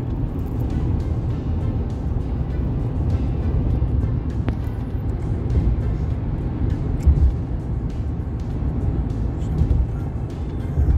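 Steady road and engine rumble heard inside a car cabin at highway speed, with music playing over it. A brief low bump stands out about seven seconds in.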